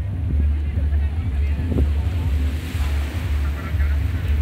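Wind buffeting a phone microphone on a beach: a steady low rumble over the wash of surf, with faint voices in the background.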